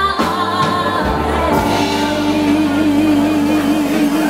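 Female soul singer with live band accompaniment. She sings a short phrase, then from about a second and a half in holds one long note with vibrato over sustained band chords, typical of the close of a song.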